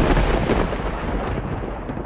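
Thunder sound effect, a deep rumble slowly dying away, its upper hiss fading out first.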